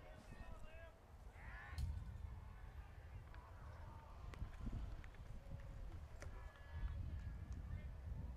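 Faint, distant voices of players and spectators at a baseball field, some calling out, over a low outdoor rumble.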